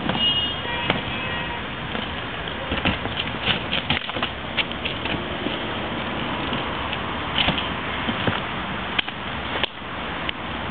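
A plastic wheelie bin rolled over a concrete pavement and set down, giving a run of clacks and knocks through the middle, over a steady street noise.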